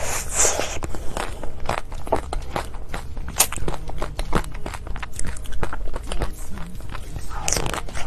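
Close-miked eating of chocolate: a crisp bite just after the start, then chewing full of small crunchy crackles, and another loud bite near the end.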